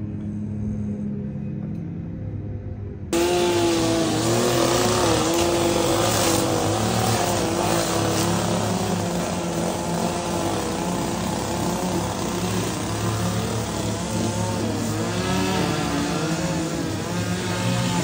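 A lawn mower engine running steadily at a distance; then, after an abrupt cut about three seconds in, a louder, closer small gasoline engine of a handheld lawn tool running at high speed, its pitch wavering up and down.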